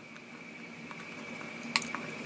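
Faint wet mouth sounds of a person licking chip dust off their fingers, with a sharper smack near the end, over a faint steady high-pitched tone.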